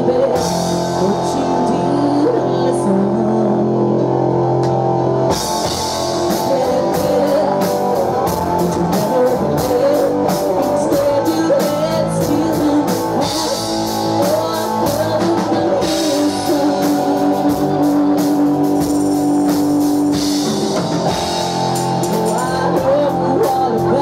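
Live rock band playing, with a woman singing lead over electric guitar, bass guitar and drum kit. About five seconds in, the drums fill out with crisp cymbal hits.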